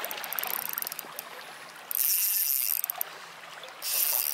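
Shimano Stella spinning reel working against a hooked grouper: a run of fine rapid clicks in the first second, then two short, loud, high-pitched buzzing bursts, about two seconds in and again near the end. Behind them, small waves wash over the shore rocks.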